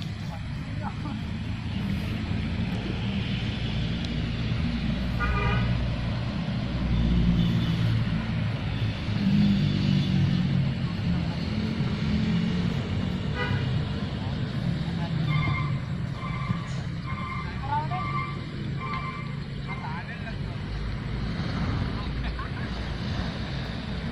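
Open-air ambience of a football match: distant players' shouts over a steady low rumble. A horn sounds briefly about five seconds in, then gives a run of short toots in the second half.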